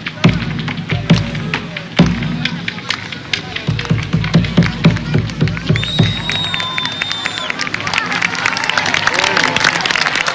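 Rapa Nui ceremonial music performance: voices over rhythmic drum strikes, about three a second in the middle, then a high whistle held for about two seconds. Crowd noise and cheering rise near the end.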